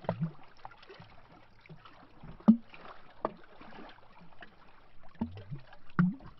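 Lake water lapping against a tree trunk at the shoreline, making irregular glugging plops, the loudest about two and a half seconds in.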